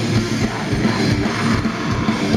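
Heavy metal band playing live: distorted electric guitars over drums, loud and continuous, heard from the crowd through the stage PA.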